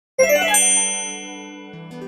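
Opening intro chime: a ringing chord struck about a quarter-second in with a tinkling sparkle on top, slowly fading, and a new lower chord entering near the end.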